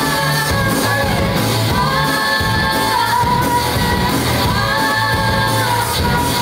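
Live rock band playing: sung vocals with long held notes over electric guitars and a drum kit, with a steady beat.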